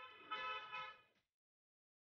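A vehicle horn sounding once with a steady pitch, about a second and a half long, swelling louder twice in the middle before cutting off.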